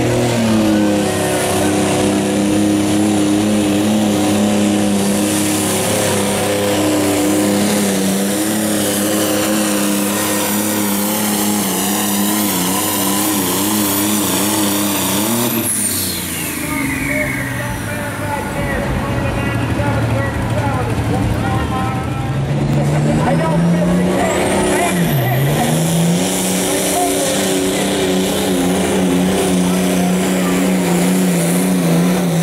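Turbocharged diesel engines of light limited super stock pulling tractors running hard at high, steady revs. About halfway through, the engine drops to a low idle as a turbo whistle winds down. Near the end it revs back up with a rising turbo whine and holds high again.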